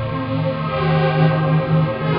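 Dark ambient music: layered, effects-processed tones held over a steady low drone, with a brighter swell rising and fading in the middle.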